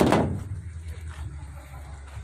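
A sudden knock or scrape right at the start that dies away within about half a second, followed by a low steady rumble.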